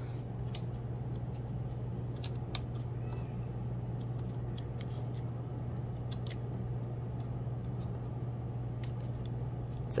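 Construction paper being folded and creased over the edge of a steel ruler: scattered small clicks and crackles, irregularly spaced, over a steady low hum.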